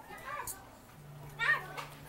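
Children's high-pitched voices in the background: a faint short call near the start and a louder one about one and a half seconds in. A low steady hum runs under the second half.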